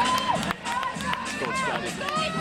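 Crowd of spectators shouting and cheering, with several drawn-out rising-and-falling calls and scattered sharp knocks.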